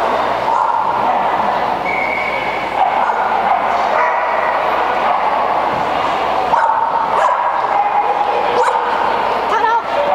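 Dogs barking and yipping over a steady din of voices in a large indoor arena.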